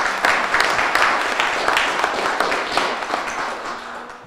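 Audience applauding, a dense patter of many hands clapping that starts loud and dies away near the end.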